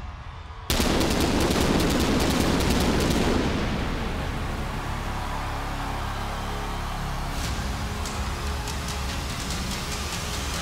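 Wrestling entrance music in an arena: after a brief lull, a sudden loud blast about a second in, fading over a few seconds back into the steady entrance music.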